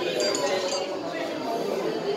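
A few light clinks in the first second, over people talking.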